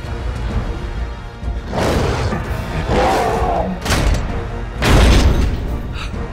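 Tense film score: a low, steady drone broken by heavy impacts, one about two seconds in, another near four seconds, and the loudest about five seconds in.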